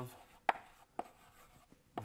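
Chalk writing on a blackboard: two sharp taps of the chalk about half a second apart, with faint scratching between them.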